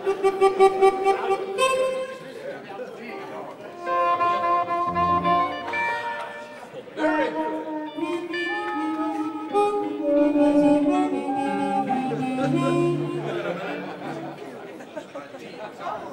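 Harmonicas amplified through microphones, playing held notes and short phrases, with pauses about three seconds in and near the end.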